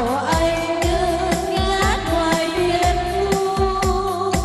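A group of singers singing a slow Vietnamese song together into microphones, holding long notes, over electronic keyboard accompaniment with a steady drum beat of about two beats a second.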